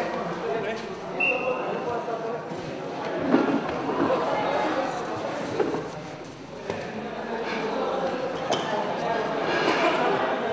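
Several voices talking in a large, echoing hall, with a few sharp knocks along the way.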